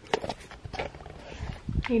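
A string of soft, irregular knocks and clicks from handling and movement as a small handheld camera is turned around, with a woman starting to speak at the very end.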